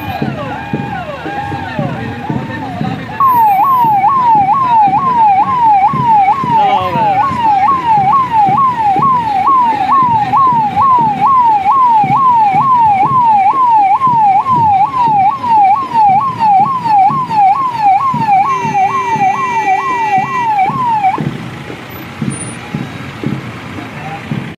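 Police vehicle sirens. Fainter wailing sirens at first, then about three seconds in a loud fast yelp sweeping up and down about twice a second runs for some eighteen seconds before cutting off. A steady horn-like tone is held for about two seconds just before the yelp stops.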